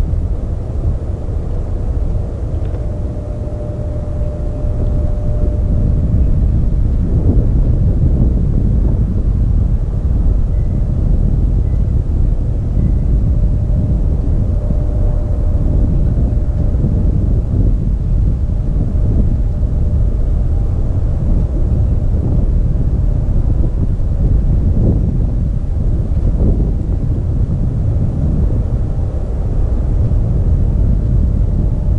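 F-35B's jet engine running as the jet taxis, a steady low rumble with a faint thin whine coming and going, mixed with wind on the microphone.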